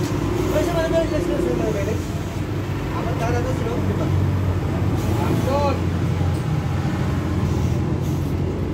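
Indistinct voices of people talking, over a steady low motor hum.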